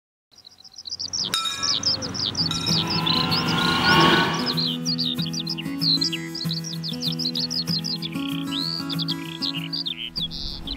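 Birds chirping rapidly over a music bed of sustained low chords, fading in at the start, with a swelling whoosh about three to four seconds in.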